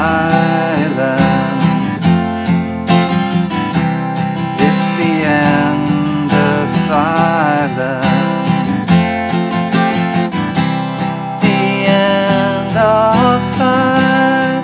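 Steel-string acoustic guitar strummed in a steady chord rhythm, with a man's voice singing a melody over it.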